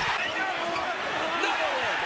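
Basketball game broadcast sound: arena crowd noise with the short, gliding squeaks of sneakers on the court.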